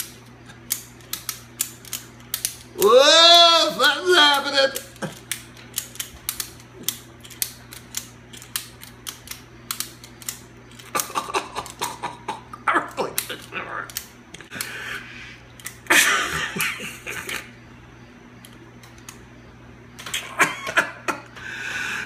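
Ratchet tie-down strap being cranked tighter, its ratchet mechanism clicking in runs of quick clicks, with a man's voice crying out and laughing between the runs.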